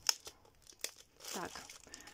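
Thin clear plastic packet crinkling as it is handled, with two sharp clicks about three-quarters of a second apart.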